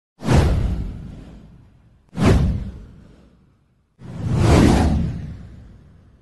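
Three whoosh sound effects from a title-card intro, about two seconds apart. The first two hit suddenly and fade over a second or two; the third swells up more gradually before fading.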